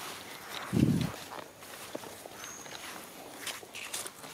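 Footsteps and rustling through leafy forest undergrowth, with one heavy low thump about a second in and light scattered clicks of leaves and twigs after it.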